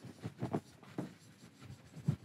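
Marker writing on a whiteboard in several short, separate strokes.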